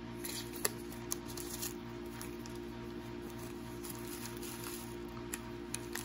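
Foil trading-card packs rustling and crinkling faintly as they are handled and shuffled between the hands, with a few light clicks, over a steady low drone.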